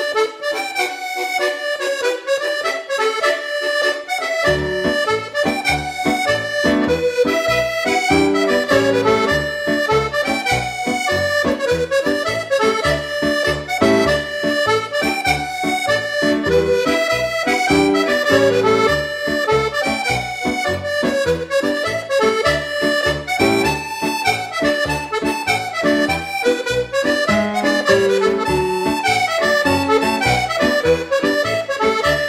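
Piano accordion playing a 6/8 march. The melody is on the treble keys alone at first, and the left-hand bass and chord accompaniment comes in about four and a half seconds in.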